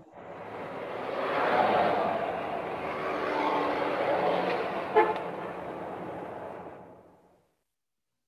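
Recorded sound effect of a car driving, swelling up over the first couple of seconds and dying away near the end, with a sharp click about five seconds in.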